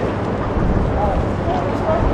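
Steady outdoor background noise: a low rumble with indistinct voices of people nearby.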